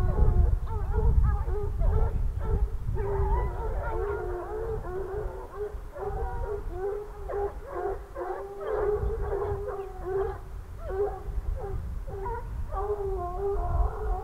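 A pack of Grand Bleu de Gascogne hounds baying, many voices overlapping continuously as they hunt a hare's line, with a low rumble underneath.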